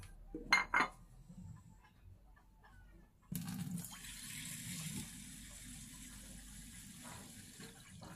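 Two quick clinks of dishware, then about three seconds in a kitchen tap starts running, pouring water steadily into a bowl of soaking mung beans to fill it for the soak.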